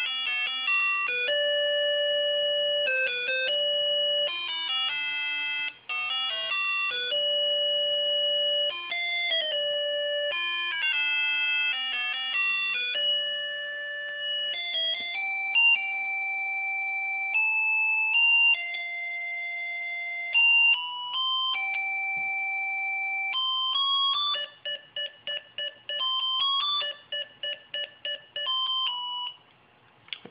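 Homemade microcontroller music synthesizer playing a stored song through its small speaker as a one-note-at-a-time melody of steady electronic tones. Near the end it plays a run of quick repeated short notes, about two or three a second, then stops.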